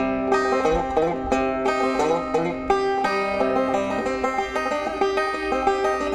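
Background music: bluegrass-style banjo picking, a quick run of plucked notes.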